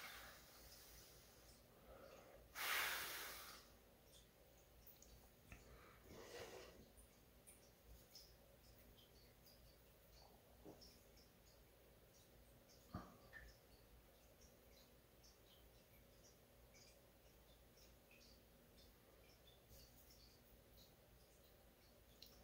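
A person blowing air onto a freshly cleaned laptop CPU to dry it: one strong blow about three seconds in and a softer one around six seconds. A light click comes near thirteen seconds; otherwise near silence.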